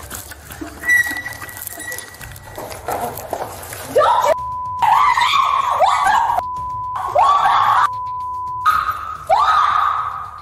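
A woman screaming and cursing in a cell area. From about four seconds in, her shrieks alternate with repeated single-tone censor bleeps that cover her swearing.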